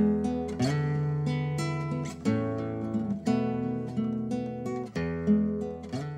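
Instrumental music led by strummed acoustic guitar chords over low sustained bass notes.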